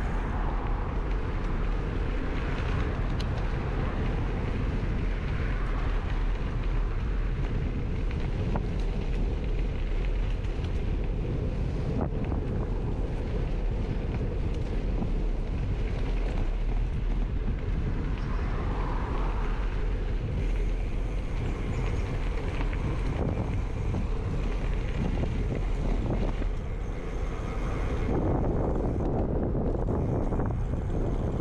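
Steady low wind rumble on a handlebar-mounted action camera's microphone while riding a gravel bike, mixed with tyre noise on a packed dirt path.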